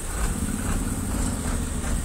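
Heavy tipper truck's diesel engine running steadily while its raised body tips out crushed-stone aggregate, with a pulsing low hum coming in just after the start.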